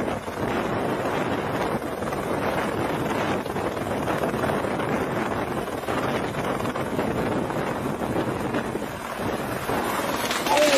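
Light helicopter hovering and settling onto a helipad close to the microphone, its rotor downwash buffeting the microphone as a steady rush of wind noise.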